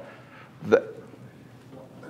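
A pause in a man's talk: one short spoken syllable about three-quarters of a second in, otherwise quiet room tone.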